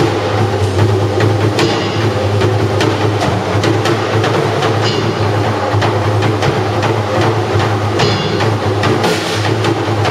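Electric bass guitar and acoustic drum kit jamming live: a steady low bass line under busy drumming, with cymbal crashes a few times.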